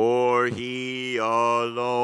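A man's voice chanting unaccompanied, holding one steady low note in a slow, drawn-out prayer chant, with a short break about half a second in and a shift of vowel just after a second.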